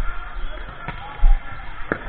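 Two sharp smacks of a volleyball, about a second apart, the second louder, over low rumble and faint voices in a gym.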